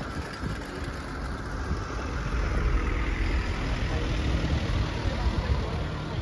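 A steady low rumble under faint background voices, growing a little louder about two seconds in.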